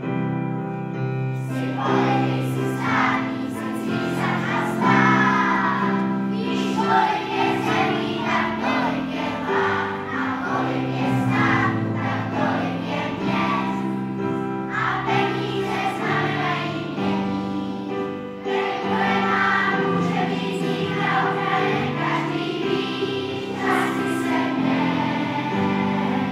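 A large children's choir of school pupils singing a song together, in continuous phrases at a steady loud level.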